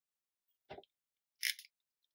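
Two brief handling sounds from a snap-off craft knife being picked up and brought to a steel ruler on a cutting mat: a dull knock a little under a second in, then a sharper, brighter click about half a second later.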